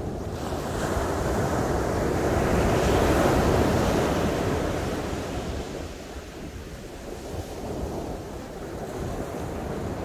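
Ocean surf breaking on a sandy beach: the wash of a wave swells about a second in, peaks in the middle, and ebbs away before the next rise near the end. A low wind rumble on the microphone runs underneath.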